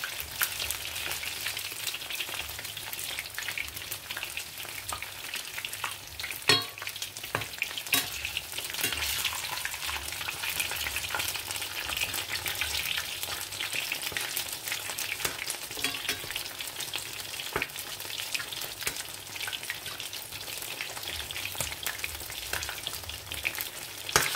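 Breaded fish fingers frying in hot oil in a stainless steel pan: a steady crackling sizzle, with a few sharp clicks of the spatula against the pan as they are turned.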